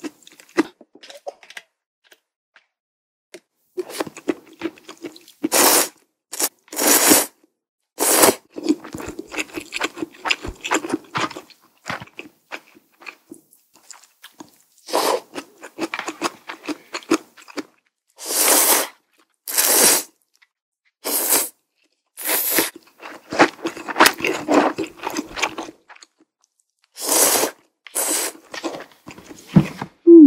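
Close-miked eating of thick ramen noodles: about ten loud slurps, each about half a second, with wet chewing between them.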